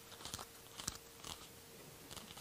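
Pages of a book and loose paper being handled and turned: a few soft, short rustles and ticks over quiet room tone.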